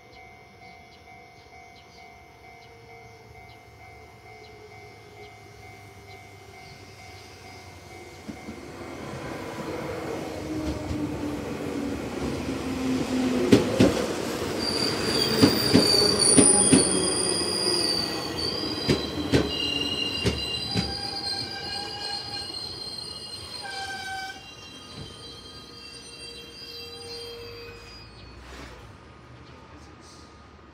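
JR Central 311 series electric train pulling into the station and braking to a stop, with a level-crossing alarm ringing steadily in the first seconds. As the train comes in, its wheels clatter over rail joints and a running hum falls in pitch as it slows. High brake squeals ring out as it halts, and it settles about three quarters of the way through.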